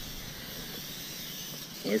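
Steady, even background hiss with no distinct event in it.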